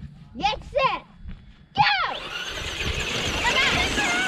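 Several Traxxas electric RC trucks take off together from about two seconds in: high motor whine and tyres spraying loose dirt, growing slowly louder.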